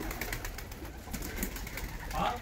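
Domestic flying pigeons (kash pigeons) at a rooftop loft: faint cooing and soft wing flaps as birds take off and fly about.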